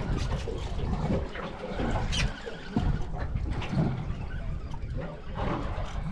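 Wind buffeting the microphone in a steady low rumble, with water washing against a small boat's hull and a few faint knocks.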